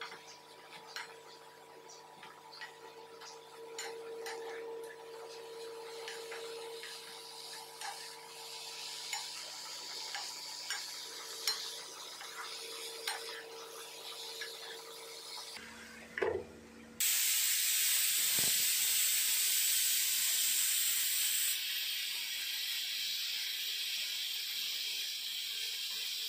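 Plastic spatula stirring shredded cabbage in a nonstick wok, with light scrapes and taps over a soft sizzle. About two-thirds of the way through, a much louder steady sizzling hiss of vegetables frying takes over.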